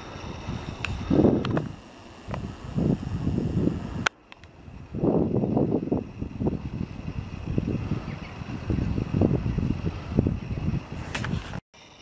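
Wind buffeting the camera microphone in uneven, low rumbling gusts. The sound breaks off abruptly twice, about four seconds in and shortly before the end.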